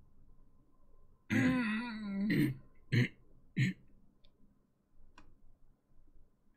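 A man clearing his throat: a rasping voiced sound about a second long, then three short bursts.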